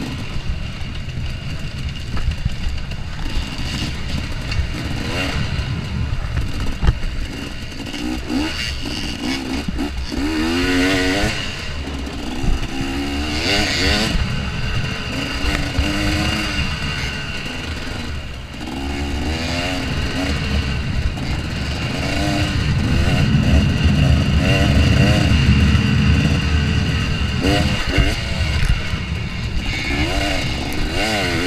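2014 KTM 250 XC-W two-stroke dirt bike engine, revving up and dropping again and again as the rider accelerates and shifts. A heavy low rumble from the ride runs under it and is strongest in the later part.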